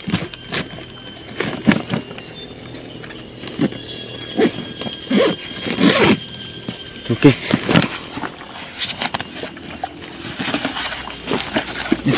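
Steady high-pitched drone of forest insects, with rustling and handling of a backpack being packed and a zipper pulled closed about halfway through; a few short spoken words.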